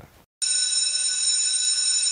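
Sustained high electronic tone, several pitches held together, cutting in suddenly about half a second in after a moment of silence: the opening tone of a TV programme ident.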